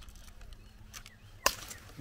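A single sharp snap about one and a half seconds in: a white pineapple's stalk breaking off under the pressure of a blade before it is actually cut through.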